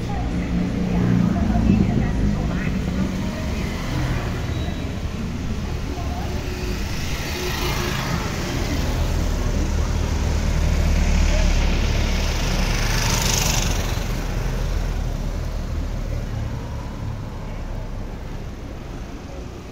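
Street traffic: motorcycles and cars driving past, with a steady low engine rumble and swells of passing-vehicle noise about eight and thirteen seconds in.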